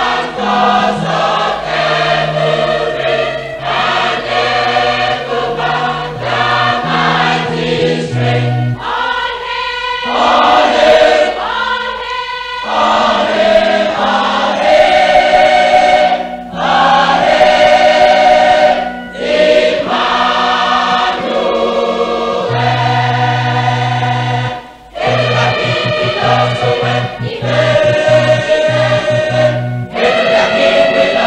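Choir singing gospel music, with sustained low bass notes moving underneath the voices.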